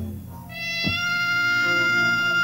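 Live rock band music: a high, held, voice-like instrument note with many overtones over a low drone. The note drops out right at the start and comes back about half a second in, and a single drum hit lands just before the middle.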